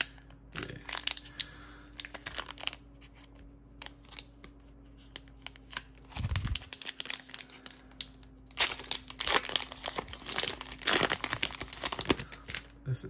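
Foil booster-pack wrapper crinkling and being torn open, with a dense run of crinkling and tearing in the second half. A soft low thump comes about six seconds in.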